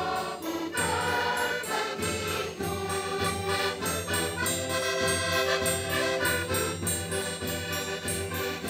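Children's and youth folk choir singing a traditional Portuguese Epiphany carol ('cantar os Reis') in chorus, accompanied by accordions and a bass drum.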